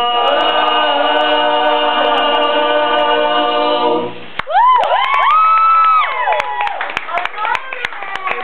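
A group of teenage boys singing a cappella in close barbershop-style harmony, holding a chord that ends about four seconds in. Then comes a single high whooping voice that rises, holds and falls, followed by scattered claps and chatter.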